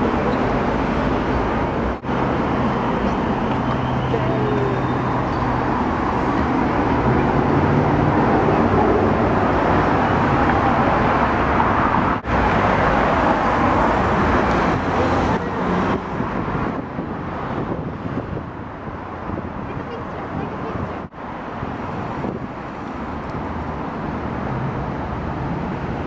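City street traffic: cars running and passing along a busy road, with a steady low engine hum in the first part.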